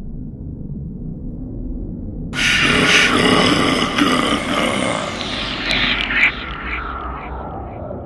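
Trailer sound effects: a low rumbling drone, joined a little over two seconds in by a sudden loud burst of noise that dies away over the next four seconds.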